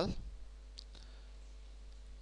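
A faint, short computer-mouse click about a second in, over a low steady hum.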